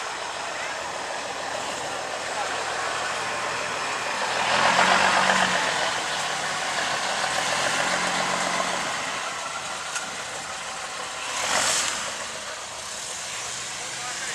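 Outdoor ambience of a gathering: background voices over a steady rushing noise. It swells louder about five seconds in, rises again a little later, and has a short loud rush near the end.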